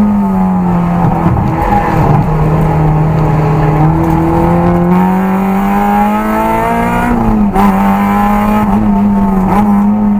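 Car engine heard from inside the cabin at track speed, pulling under load with its pitch climbing slowly, then dropping briefly about seven and a half seconds in before running steady again.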